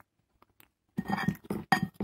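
A metal fork and knife clinking and scraping against a plate as food is cut and picked up. A run of sharp clinks, some with a brief ring, starts about a second in.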